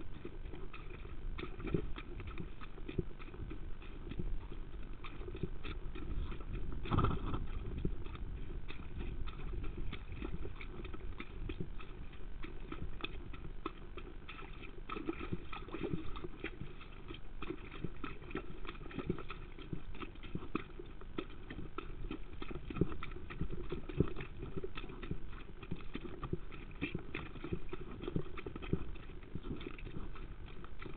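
A horse's hoofbeats during exercise: an irregular, steady run of dull thuds and knocks, with one louder knock about seven seconds in.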